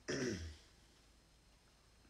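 A man clearing his throat in two short rasps right at the start.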